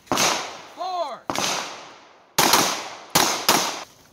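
Pistol shots on an outdoor range: five separate shots spread over about four seconds, the last two close together, each with a short echo.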